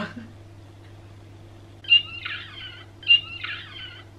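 A pug whining: three short, high-pitched whines about a second apart, over a steady low hum.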